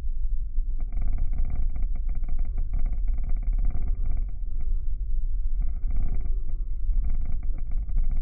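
Airliner cabin noise in flight, heard inside the cabin: a steady low rumble of the engines and airflow, with a higher hiss that comes and goes above it.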